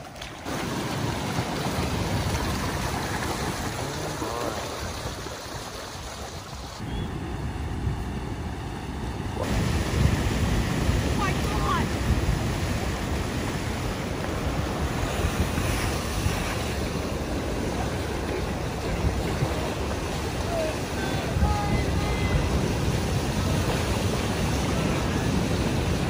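River water rushing and churning through a channel cut in a breached sand berm, its standing waves breaking, a dense steady noise with wind buffeting the microphone. It softens for a couple of seconds about seven seconds in.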